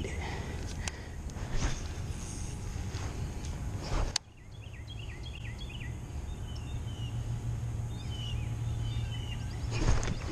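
Small songbird chirping a run of quick, falling chirps, with a second run near the end, over a steady low hum. A few light clicks in the first four seconds, the sharpest one about four seconds in.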